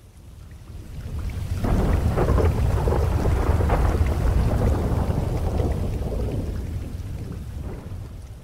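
Rolling thunder over rain: a low rumble that swells up over the first two seconds, holds, and fades away near the end.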